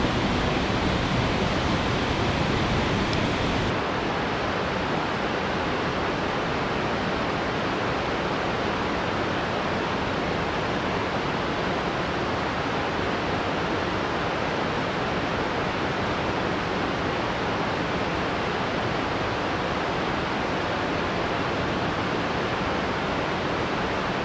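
Steady rushing of Mesa Falls' waterfall and the river below it. About four seconds in the sound shifts slightly and loses some of its highest hiss.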